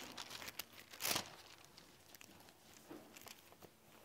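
Thin Bible pages being leafed through, rustling faintly, with one louder page swish about a second in.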